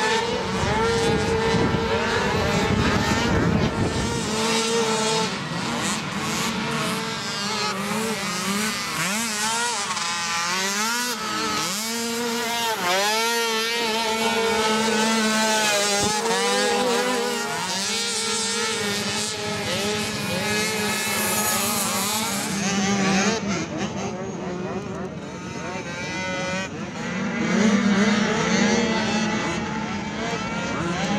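Small youth ATV engines revving and backing off as they race around a motocross track, their pitch rising and falling over and over, with more than one machine heard at once.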